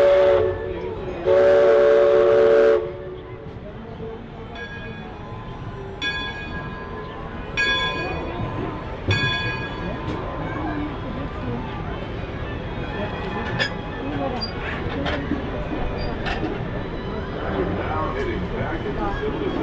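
Mark Twain Riverboat's steam whistle sounding two long, loud chord blasts in the first three seconds. It is followed by a bell struck about four times, roughly every second and a half, over crowd chatter.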